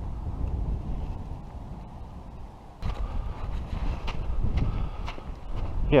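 Wind buffeting the microphone as a low rumble. Just under three seconds in the sound changes abruptly, and footsteps crunch through snow, about two a second.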